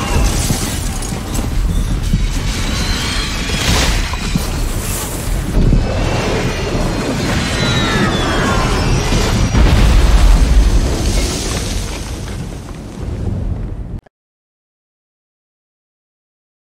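Movie sound effects of a jet crash-landing: a dense, loud rumble of the fuselage crashing and crunching through snow and trees, with a few falling whining tones in the middle. It peaks about ten seconds in, fades, and cuts off suddenly near the end.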